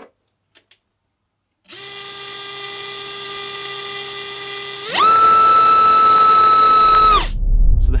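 A BrotherHobby R4 Returner 2206 2300kv brushless motor spinning an HQ 5040 tri-blade prop on a thrust bench. It whines steadily at low throttle, and about three seconds later it jumps to full throttle with a much louder, higher whine. After about two seconds at full throttle it cuts off, leaving a low rumble.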